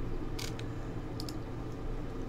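A few short clicks from a computer mouse: one about half a second in and two close together a little after a second. Under them runs a steady low hum.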